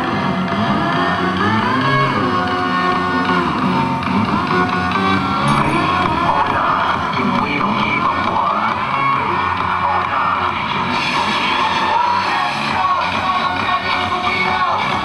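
Loud amplified dance music played through a parade vehicle's loudspeakers, running without a break.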